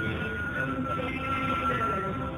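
Harmonica holding one long steady note over acoustic guitar in a live song, fading away near the end.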